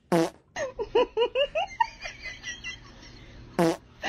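A short loud fart sound at the start and another near the end, with a run of high laughter between them.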